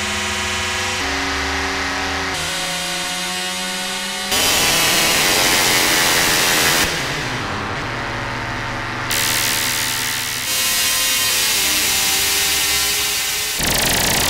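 FM-patched modular synthesizer played from a keyboard: an E-RM Polygogo oscillator, frequency-modulated by a WMD SSF Spectrum VCO and run through two Mutable Instruments Ripples filters. Held notes change pitch every second or so. About four seconds in, the sound jumps louder into a harsh, noisy buzz that lasts a few seconds, then pitched tones return with a gritty edge, with another louder stretch near the end.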